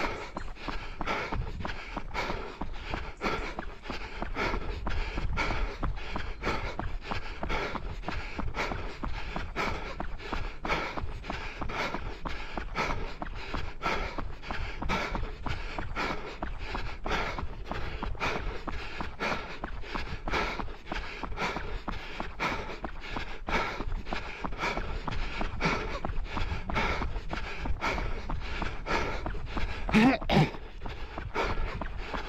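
A runner's steady footfalls, about three a second, with hard, heavy breathing while running at race pace.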